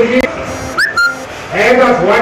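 A brief whistle about the middle, a quick rising note then a short steady one, between stretches of a man speaking.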